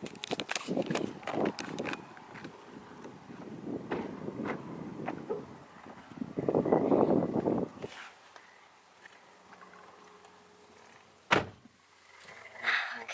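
Footsteps and irregular handling noise beside a car, then a single sharp thud near the end as the door of the 2012 Lexus ES 350 shuts.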